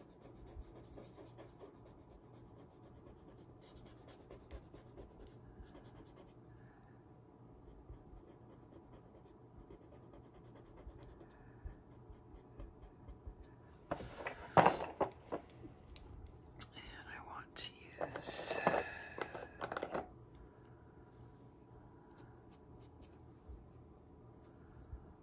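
Faint strokes of a pastel pencil rubbing over Pastelmat sanded pastel paper as colour is blended in, with two louder bursts of sound about 14 and 18 seconds in.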